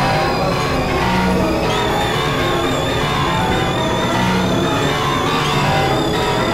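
Experimental electronic music of dense, layered synthesizer drones and steady tones. A high warbling tone comes in about two seconds in and holds.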